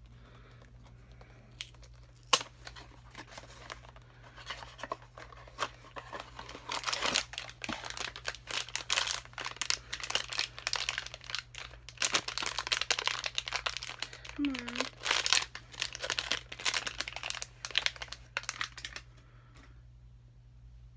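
A cardboard blind box being torn open at its tear tab, then a foil wrapper crinkling as a small vinyl figure is unwrapped: irregular tearing and rustling with sharp clicks, the loudest a snap about two seconds in.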